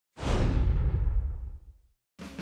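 Whoosh sound effect for an animated logo intro. It comes in sharply just after the start, then fades out over about a second and a half, the high hiss dying away before the low rumble.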